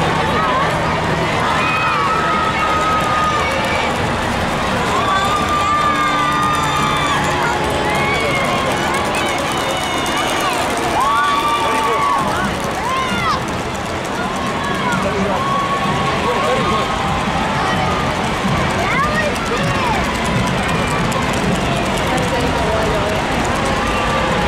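Parade crowd: many voices talking and calling out at once, a steady hubbub of overlapping speech with no single voice standing out.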